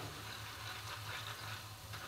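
Hot oil sizzling steadily around strands of besan-and-maize-flour sev deep-frying in an iron kadhai.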